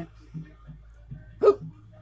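A single short vocal sound from a man, hiccup-like, about one and a half seconds in. Otherwise only a low steady hum.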